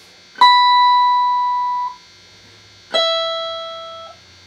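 Two single notes plucked on the high E string of an Epiphone Les Paul electric guitar as its intonation is checked against a tuner. The first is a high note at the 19th fret, about half a second in, ringing for about a second and a half. The second is the lower 12th-fret note, about three seconds in, fading out.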